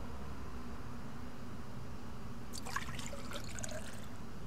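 Water splashing briefly, starting about two and a half seconds in and lasting just over a second, over a low steady background rumble.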